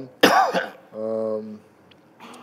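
A man coughs once, a short harsh clearing of the throat, followed about a second in by a brief steady hummed 'mm'.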